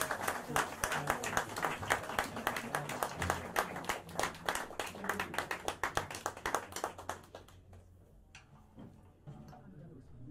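Small club audience applauding at the end of a tune, the clapping thinning out and stopping about seven and a half seconds in.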